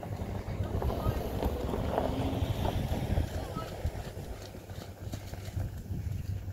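Wind buffeting the microphone, a steady low rumble, with faint indistinct voices in the distance.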